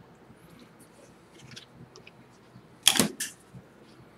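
Faint scratching of a mechanical pencil drawing on paper. About three seconds in comes a sharp plastic clack and a smaller one just after, as the clear plastic drafting triangle is shifted and set down on the drawing.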